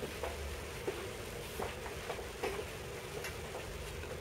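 Quiet room tone with a steady low hum, and a handful of faint shuffles and small knocks, roughly one a second, from people moving about at the music stands.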